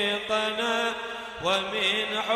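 A man chanting an Arabic munajat (devotional supplication poem) into a microphone, drawing out long ornamented notes that bend and glide up and down in pitch, with a brief break for breath near the end.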